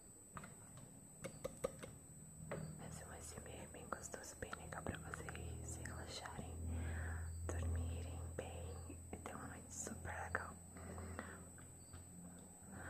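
A woman whispering close to the microphone, breathy and without clear words, with many small sharp clicks scattered through it.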